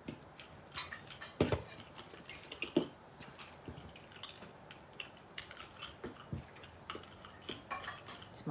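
Scattered light clicks and taps of small craft items being handled on a desk, with two sharper knocks about one and a half and three seconds in.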